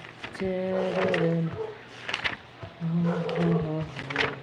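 A woman's voice drawling long, held vowel sounds that step down in pitch, in two stretches: one from about half a second in and one near the end.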